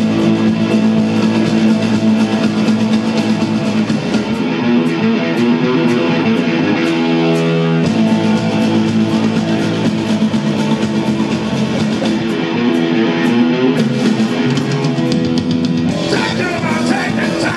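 A live rock band playing an instrumental passage: electric guitars and bass over a drum kit keeping a steady, driving beat, loud and without vocals.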